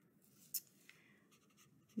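Felt-tip marker writing on construction paper: faint scratching strokes, with one sharp click about half a second in.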